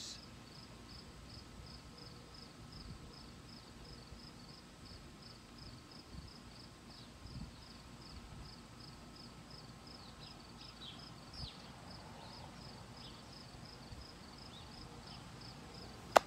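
An insect chirping faintly and steadily, a high-pitched pulse repeated about two to three times a second. A few other faint short chirps come in about two-thirds of the way through.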